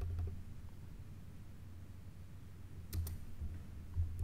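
Laptop keys being pressed, a few sharp clicks with dull low thuds: near the start, about three seconds in and at the end.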